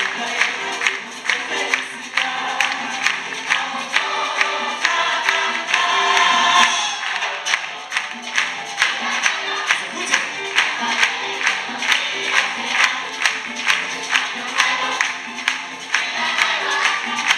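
Youth symphony orchestra and choir performing a Christmas piece, with a steady beat of sharp percussive strikes about twice a second.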